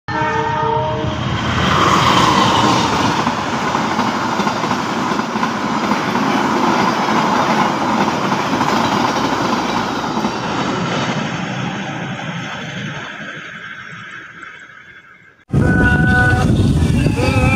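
A train horn sounds a short chord, then a passenger train passes close at speed, its loud rolling noise slowly fading away over the last few seconds.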